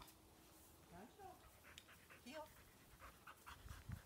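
A dog whining faintly: two short rising whines about one second and two seconds in, over soft panting.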